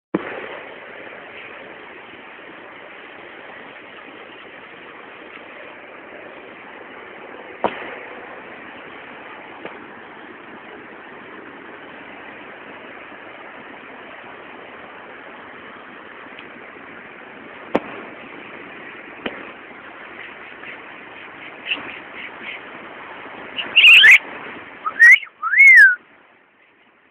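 A steady hiss of outdoor noise with a few sharp knocks, then near the end several loud whistle-like calls that glide up and down in pitch.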